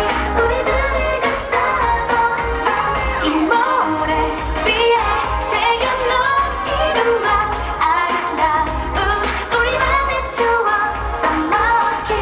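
K-pop dance-pop song with female vocals played loud over a stage PA, with a steady deep bass beat.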